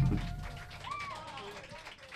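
The last drum hit and amplified chord of a rock band ringing out and fading away at the end of a song. About a second in there is a short voice call.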